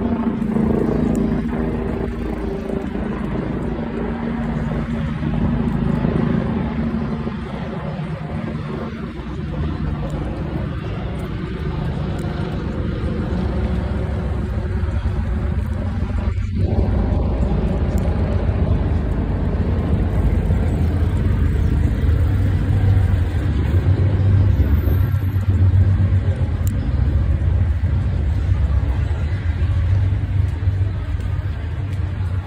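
Steady low rumble of street traffic, growing heavier in the second half.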